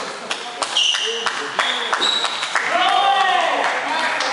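Voices of people talking in a sports hall, with several sharp clicks of a table tennis ball scattered through.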